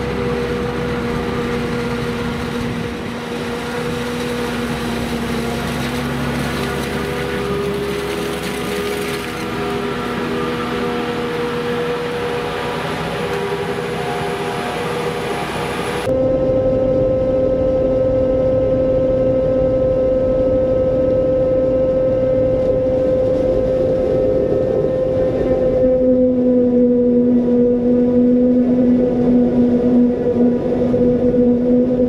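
Self-propelled forage harvester chopping maize: a steady heavy-machinery drone with a held, even hum. About halfway through the sound changes abruptly to a different steady drone.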